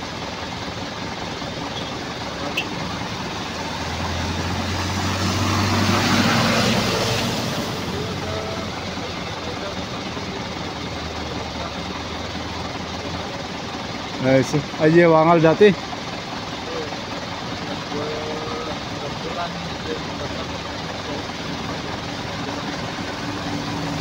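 A light truck drives past close by, its engine and tyre noise swelling to a peak about six seconds in and fading away by about eight seconds, over a steady background of vehicle noise. A voice speaks briefly about fifteen seconds in.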